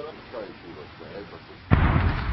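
A sudden loud artillery boom near the end, its low rumble carrying on afterwards: shelling starting up again.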